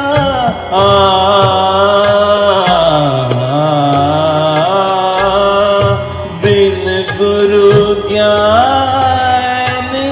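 Male voice singing long held, ornamented vowels in Raag Malkauns over an instrumental backing track, the notes gliding up and down with short breaks between phrases.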